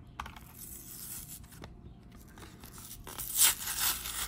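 Clear plastic blister of a Pokémon card pack being pried off its cardboard backing, with crackling and rustling, then the card backing tearing loudly a little after three seconds in.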